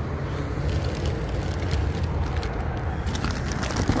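Plastic bags crinkling and rustling as bagged action figures are handled in a plastic tote, with a short burst of crackling about three seconds in, over a low steady rumble.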